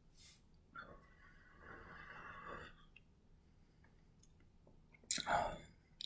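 Soft breathy exhale lasting about two seconds, then a faint click, then a short, louder breath just before speaking.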